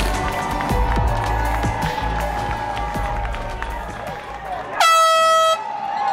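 Background music with a steady bass beat, cut off near the end by a single loud air-horn blast, one steady tone lasting under a second.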